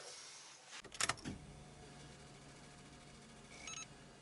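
Inside a car's cabin, a click about a second in, then a faint steady hum, and near the end a quick run of electronic beeps from the dash. These are the car's electrics coming on with the ignition, ahead of starting the engine.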